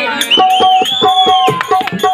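Live folk drama accompaniment: mridangam strokes in a quick, steady beat under a held, wavering high melody.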